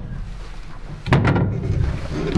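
Scuffling and a thump of a person climbing up onto a tall plywood toilet box, with a sudden burst of noise about a second in.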